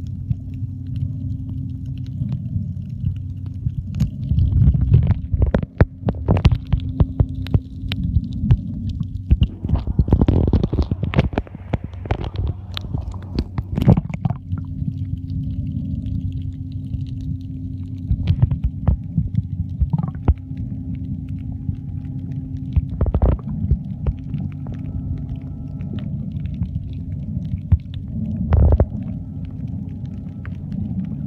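Muffled underwater sound from a camera held below the surface while snorkelling: a continuous low rumble with a steady low drone, broken by sharp knocks and crackles, with a dense burst of water noise between about ten and fourteen seconds in.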